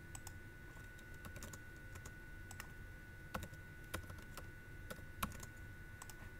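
Faint typing on a computer keyboard: scattered key clicks, with a few sharper ones in the second half.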